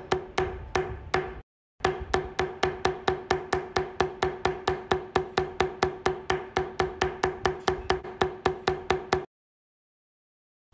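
Metal leather-carving beveler stamp struck rapidly with a mallet against vegetable-tanned leather, about five sharp ringing taps a second, pressing down the edges of the carved lines. The tapping breaks briefly about a second and a half in, then runs on and stops near the end.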